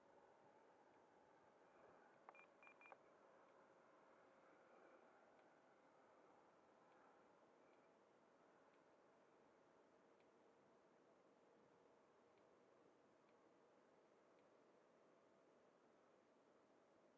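Near silence with a faint steady hum. About two seconds in, a quick run of about four short high beeps from an RC transmitter as its trim is clicked.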